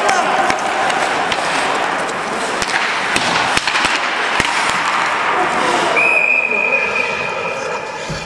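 Ice hockey play: skate blades scraping the ice and sticks clacking on the puck. About six seconds in, a referee's whistle blows one long steady note, stopping play.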